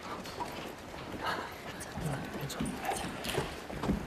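Footsteps clicking irregularly on a hard floor, with a low murmur of voices behind them.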